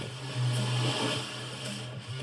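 A small motor whirring, heard through a TV speaker; it gets louder about half a second in and eases off before the end.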